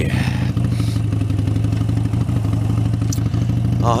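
Harley-Davidson Sportster 72's air-cooled V-twin running steadily under way at road speed.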